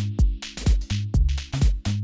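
Electronic dance music played through a club sound system during a DJ set: a four-on-the-floor kick drum about twice a second over held bass notes, with crisp hi-hats on top.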